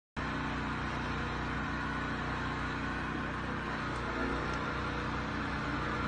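Steady background hum with faint low droning tones and no distinct events.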